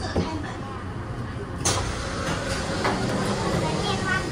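Taipei Metro C301 train car's sliding passenger doors opening about a second and a half in, with a sudden rush of noise over the low rumble of the stopped train.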